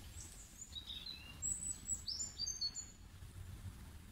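Faint birdsong: a scatter of short, high chirps and twitters from about a second in until nearly three seconds, over a soft, low, steady rumble of natural ambience.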